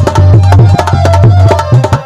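Loud amplified rasiya folk music: fast hand-drum strokes, several a second, with deep booming drum tones, under a held melody line.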